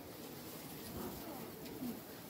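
A dove cooing softly in a few low notes, over a faint murmur of people's voices.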